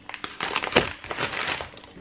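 Plastic packaging crinkling and crackling as packets of rice are handled and taken out of a shopping bag, with a sharper crackle a little under a second in.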